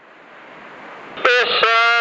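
Marine VHF radio hissing faintly between transmissions, the hiss growing louder, then a man's voice comes over the radio with a long drawn-out "uh" about a second in.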